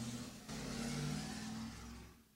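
A low, steady engine-like hum, briefly dipping about half a second in, then stopping at the end.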